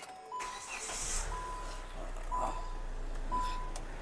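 A car's dashboard warning chime beeping about once a second, while the engine starts and runs with a steady low hum.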